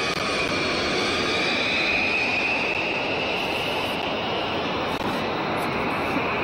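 Jet aircraft engines running, a steady loud roar with a high whine over it that dips a little and then climbs again.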